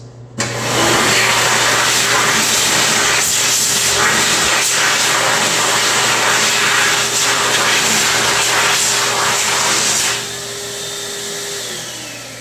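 A 2009 Excel Xlerator XL-W high-speed hand dryer switching on as a hand goes under its nozzle and blowing loudly, a rushing airflow with a steady hum beneath, for about ten seconds. It then cuts out and its motor winds down with a falling whine.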